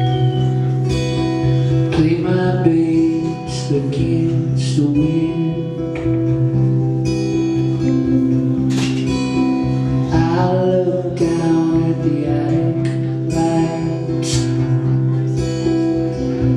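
Live solo performance of strummed acoustic guitar over sustained droning tones, with a gliding melody line rising and falling a few times.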